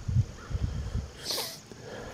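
A short sniff about one and a half seconds in, over a low rumble of wind and handling on the microphone as the detector is carried across the grass.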